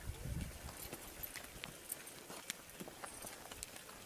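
Donkey's hooves clip-clopping faintly and irregularly on a stony dirt road as it walks, with a short low rumble at the very start.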